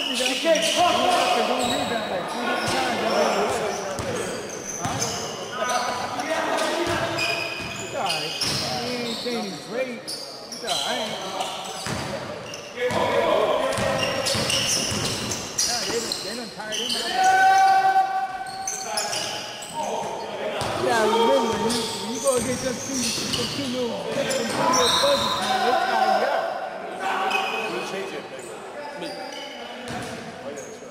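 A basketball being dribbled and bounced on a gym floor during play, repeated hard bounces ringing in a large, echoing gym, with players' voices calling out over it.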